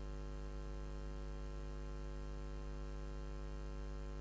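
Steady electrical mains hum: a low, unchanging drone with a ladder of evenly spaced higher overtones.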